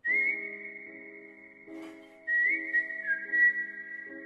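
Background film score: a high, whistle-like melody of long held notes that slide up at the start and step down about three seconds in, over soft sustained chords.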